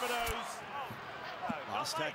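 Rugby league television commentary from match highlights, a commentator's voice playing faintly at low volume, with a short dull thump just after the start.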